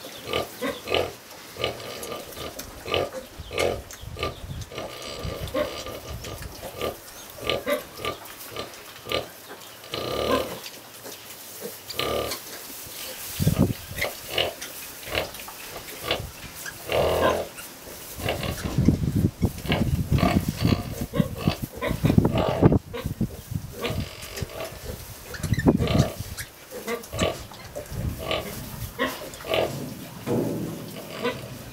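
A nursing sow and her week-old piglets making short grunts and squeaks, repeated about once a second as the litter suckles. The sounds are louder and fuller through the second half.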